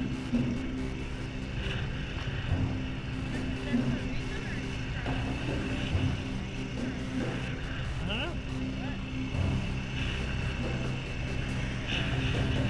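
Polaris 550 ATV engine running at a steady pace while the quad is ridden along a dirt track, heard from a camera mounted on the machine.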